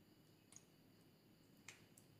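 Faint sticky pops and snaps from clear slime with foam beads as hands pull it apart and press into it: two short clicks, about half a second in and a louder one near the end, over near silence.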